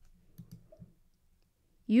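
A few faint, soft clicks in the first second, then a woman's voice begins near the end.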